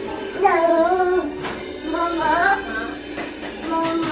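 A young child's high voice singing a wordless tune in short melodic phrases, with music underneath.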